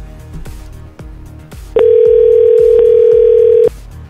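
One ring of a telephone ringback tone: a steady single tone lasting about two seconds, starting a little before the middle, heard as an outgoing call rings at the other end. Background music with a steady beat plays underneath.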